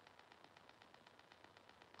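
Near silence: faint room tone with a faint, fast, even ticking, about ten ticks a second.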